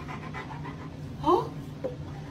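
A dog gives a short, rising whine about a second in, over a low steady hum, with a small click near the end.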